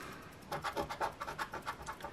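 A coin scraping the coating off a scratch-off lottery ticket in quick repeated strokes, about six a second, starting about half a second in.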